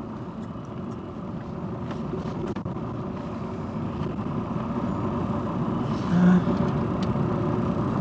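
Engine and road noise of a Thaco Mobihome sleeper coach heard from inside the cabin while it drives, a steady hum that slowly grows louder, with a brief louder sound about six seconds in.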